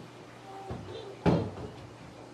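A faint thump, then a loud, sharp knock about a second later, like a door or something hard striking wood, over a steady low hum.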